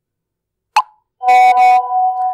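WhatsApp message sounds: a single short pop about three-quarters of a second in as the message goes, then a loud, held electronic tone, buzzy for its first half-second and plainer after, as the reply arrives.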